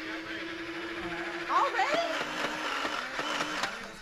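A toy blaster's small electric motor whirring steadily for almost two seconds, stopping just before halfway, with players' voices and shouts around it.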